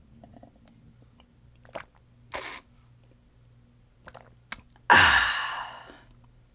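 Drinking from a stainless steel cup: gulps and swallows. A sudden loud exhale about five seconds in fades over a second as the cup comes down. A fan hums steadily underneath.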